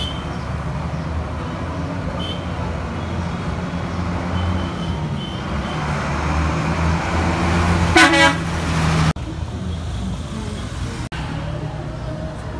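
Street traffic, with vehicle engines running steadily and a short car or motorcycle horn toot about eight seconds in. The sound drops out abruptly twice near the end.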